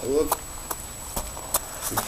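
Footsteps on loose pebbles and gravel: a run of sharp clicks, about two or three a second.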